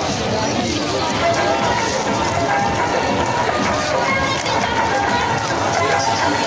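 Crowd at a busy outdoor fair: many voices chattering together over music playing, at a steady level.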